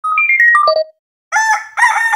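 A quick descending run of electronic chime notes, then after a short silence a rooster crowing, starting about a second and a half in.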